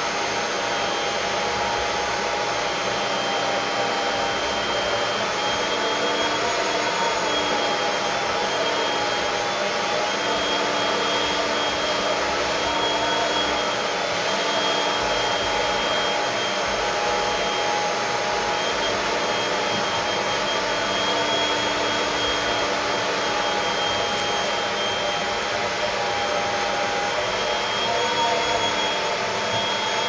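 Steady whir of an electric motor, like a fan or blower, with a few faint tones in it wavering slightly in pitch.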